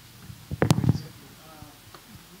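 Handheld microphone handling noise: a brief cluster of low rumbling thuds and clicks about half a second in, as the microphone is moved and lowered.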